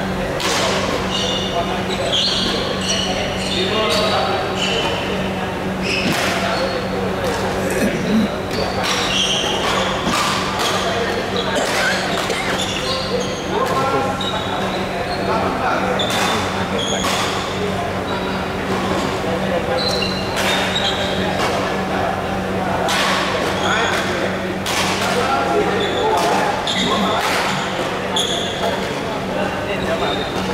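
Busy indoor badminton hall with a reverberant sound: sharp racket strikes on shuttlecocks at irregular intervals, short high squeaks of shoes on the court floor, and background chatter over a steady low hum.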